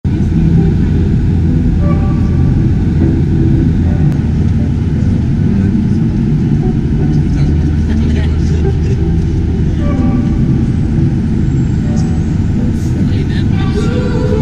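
Airliner cabin noise in flight: a loud, steady low rumble of jet engines and rushing air, with faint voices underneath.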